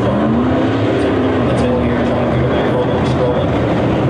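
A field of USRA Modified dirt-track race cars with V8 engines running at racing speed around the oval, one engine note climbing in the first second as cars accelerate.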